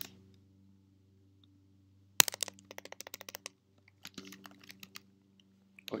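Typing on a computer keyboard: a sharp key click about two seconds in, then a quick run of about ten keystrokes, a short pause, and a second, lighter run of keystrokes before the end.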